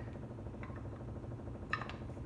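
Steady low room hum with two faint clicks, about half a second in and near the end, from the small parts of a tripod gimbal head being handled.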